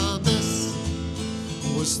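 Acoustic guitar strummed and ringing between sung lines of a folk ballad, with a man's singing voice coming back in near the end.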